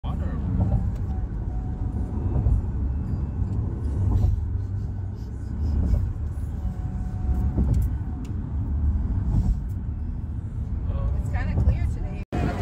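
Road noise inside the cabin of a moving car: a steady low rumble of tyres and engine.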